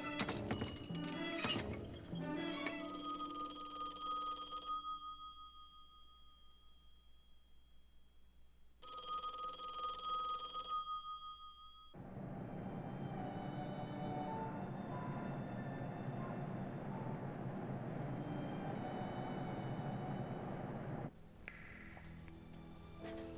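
A few clicks at a pay phone, then a telephone ringing twice, each ring about two seconds long with about four seconds between them. This is the ring of a call being placed. A steady, fuller sound follows after about twelve seconds and cuts off near the end.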